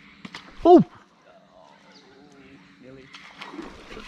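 A man's short startled "oh" just under a second in, falling in pitch. Before it there are a faint low hum and a few small clicks, which stop at the exclamation. After it only faint, indistinct sounds follow.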